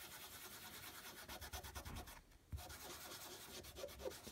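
Lint-free nail wipe rubbed rapidly back and forth over a metal MoYou London stamping plate, cleaning off the polish: a faint, fast scrubbing. It pauses briefly a little over two seconds in, then resumes.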